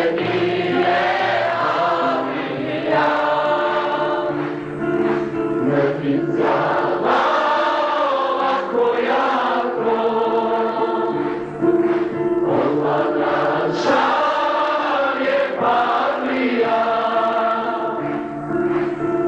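A choir singing a slow melody in long held notes over steady low sustained tones.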